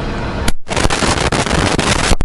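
A car rolling slowly with a low rumble. About half a second in there is a click, and then a loud, even rushing hiss takes over.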